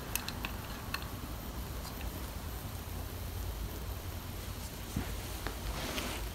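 Quiet room hiss with a few faint clicks and taps from a wooden snap rat trap being handled and set down on carpet. The trap does not snap.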